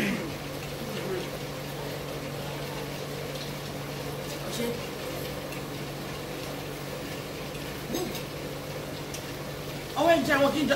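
Room tone with a steady low hum, with a couple of faint brief sounds in the middle and near the end.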